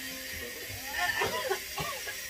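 Faint, indistinct voices of people talking, quieter than the loud talk on either side, over a faint steady low hum.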